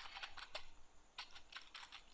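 Faint typing on a computer keyboard: a quick run of keystrokes, a pause of about half a second, then another run of keystrokes.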